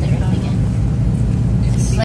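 Steady low rumble of a moving vehicle's engine and road noise, heard from inside the cabin.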